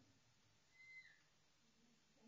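Near silence: quiet room tone, with one brief high tone about a second in that dips slightly in pitch as it ends.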